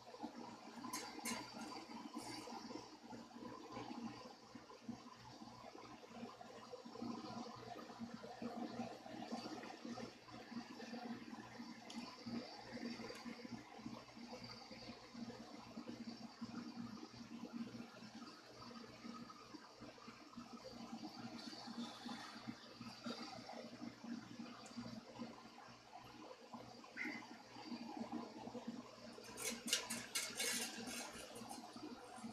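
Faint handling noise of an electric guitar being restrung: a string winder turning a tuning peg and the string rubbing as it wraps, with a few sharp clicks about a second in and a cluster of clicks near the end.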